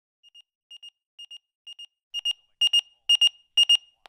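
Electronic alarm beeping in quick high-pitched pairs, about two pairs a second; faint at first, it turns much louder about halfway through.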